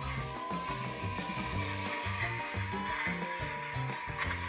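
Background music with a steady bass line, and under it the steady whir and grinding of an electric pepper mill running as it grinds peppercorns.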